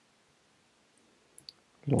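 Quiet room tone, then two light computer-keyboard key clicks about one and a half seconds in, with a spoken word starting just before the end.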